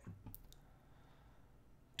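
Two faint clicks in quick succession from a computer mouse, over near-silent room tone.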